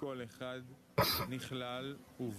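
A man's voice reading aloud in Hebrew, quieter than the English translation around it, with a short rasping throat-clearing sound about a second in.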